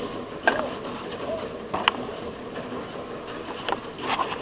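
A bird calling: a few short, low calls that rise and fall in pitch, heard twice in the first second and a half. Sharp knocks come through about half a second in, near two seconds and near the end.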